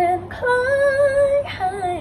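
A young woman singing a short melodic phrase, holding one long, slightly wavering note in the middle, then dropping to lower notes near the end.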